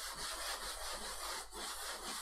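Felt chalkboard eraser rubbing back and forth across a blackboard, wiping off chalk in quick, continuous strokes.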